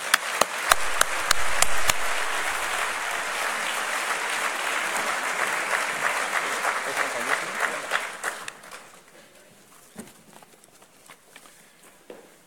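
Audience applauding, with sharp single claps close to the microphone in the first couple of seconds. The applause fades out about eight or nine seconds in, leaving only a few faint knocks.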